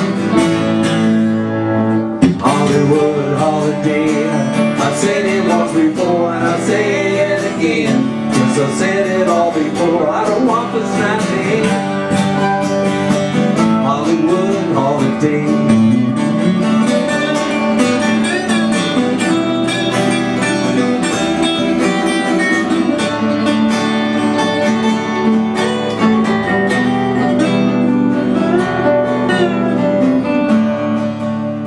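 Live acoustic folk-rock band music: acoustic guitars strumming and picking chords, with a wavering melodic line over them.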